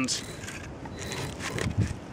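French-pattern draw knife being pulled along a seasoned birch mallet handle, shaving the wood in a few quiet scraping strokes.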